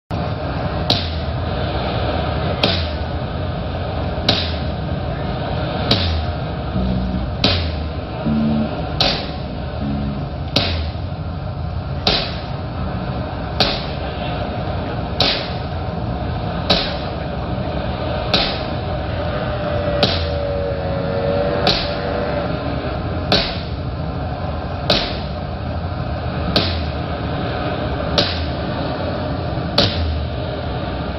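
A live rock band plays a slow, droning instrumental intro. A sharp percussive hit falls about every second and a half over a sustained dense drone with a few low notes.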